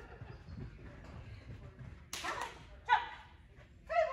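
A dog giving short barks and yips: a harsh bark a little past halfway, then two higher, shorter yips near the end.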